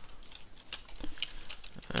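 Typing on a computer keyboard: scattered single keystrokes, irregularly spaced, a few a second.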